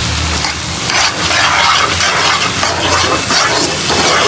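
Sliced onions in spice paste sizzling in a non-stick wok, stirred and scraped with a spatula in repeated strokes.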